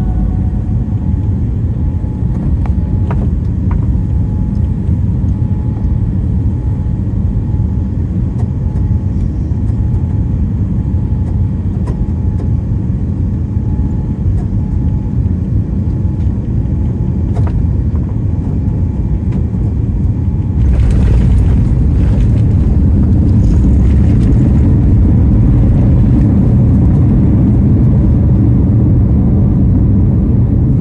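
Boeing 787-9 cabin noise at a window seat during landing: a steady low rumble of engines and airflow. About twenty seconds in it turns louder and rougher and stays so as the airliner is on the runway.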